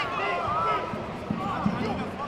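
Many overlapping voices of coaches and spectators calling out in a large, echoing sports hall, with a couple of short dull thumps in the second half.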